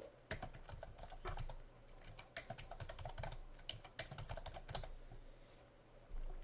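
Typing on a computer keyboard: three short runs of key clicks with brief pauses between them, a short word typed into each of three places.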